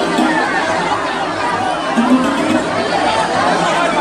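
Dense crowd of many voices chattering over one another, steady and loud, with no single voice standing out.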